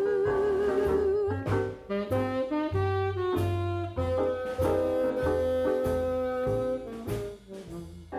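Tenor saxophone playing a jazz melody line, opening on a held note with vibrato and then moving through shorter changing notes, over a bass line and band accompaniment.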